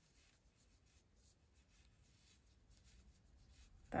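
Near silence, with faint soft rubbing of yarn drawn through and over a crochet hook as a stitch is worked.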